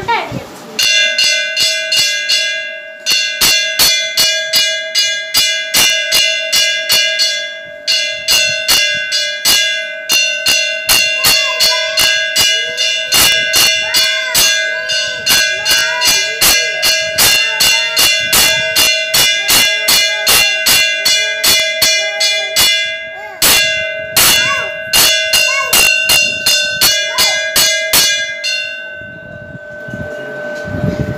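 Temple bell rung rapidly and steadily during the lamp offering (aarti), about two to three strikes a second, its ring carrying on between the strokes. The ringing stops briefly twice and ends shortly before the close.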